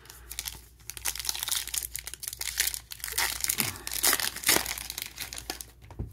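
A 2022 Panini Prizm Baseball foil trading-card pack being torn open and its wrapper crinkled by hand: a dense, irregular crackling throughout.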